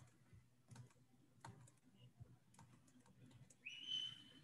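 Faint computer keyboard clicks and taps in near silence, with a short high-pitched tone near the end.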